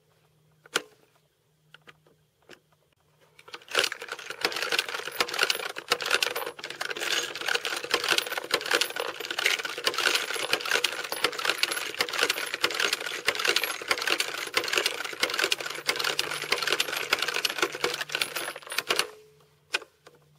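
Breda M37 feed strip loader being worked: a few light clicks, then from about four seconds in a long dense run of rapid metallic clicking and clinking as cartridges from the hopper are pressed into the feed strip, stopping shortly before the end.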